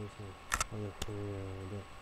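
A man talking, with a drawn-out word, and two sharp clicks about half a second and a second in.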